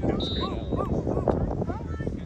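Spectators talking, with a dog giving a string of short, high yips about four times a second.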